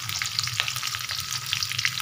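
Chopped onion, garlic and dried red and green chillies sizzling in oil in a metal kadai as they are stirred, a steady hiss with frequent small crackling pops. A low steady hum runs underneath.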